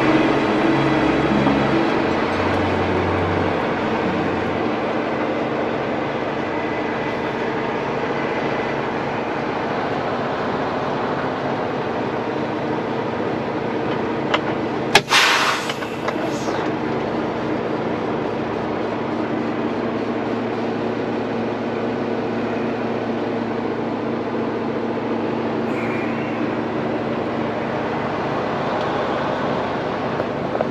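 Semi-truck diesel engine idling steadily, heard from inside the cab, with a loud hiss of air lasting about a second and a half midway through. Music fades out in the first few seconds.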